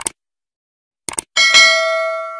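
Subscribe-button animation sound effect: a quick double mouse click, another double click about a second later, then a bell ding that rings on and fades slowly.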